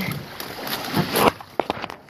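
Water splashing and rushing against a Nacra 20 beach catamaran's hulls as it gets under way, with a louder rush about a second in and a few sharp knocks near the end.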